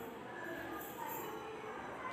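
Faint steady background noise with a few faint drawn-out tones in it, low under the level of the narration.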